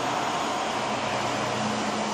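Steady room background noise: an even hiss with a faint, steady low hum.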